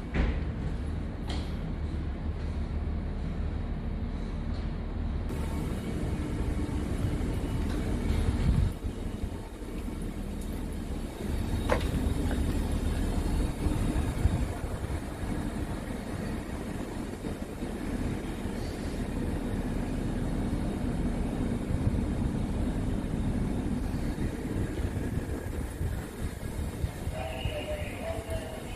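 Steady low rumble with a droning hum, the machinery and ventilation of a moored ferry heard through an enclosed boarding walkway, mixed with walking and handling noise. There is one short sharp click about twelve seconds in.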